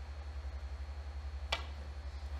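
A snooker cue tip striking the cue ball once on the break-off shot: a single sharp click about one and a half seconds in, over a low steady hum.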